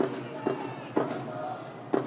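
Football stadium ambience: faint voices over a steady background, with a few sharp thuds spaced about half a second apart.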